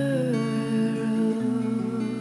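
Background song: a long held vocal note that slides down, over guitar and sustained bass notes.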